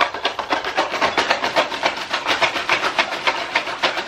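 A plastic poly mailer being shaken rapidly and steadily beside the ear: the plastic crinkles and the contents rattle inside with each stroke.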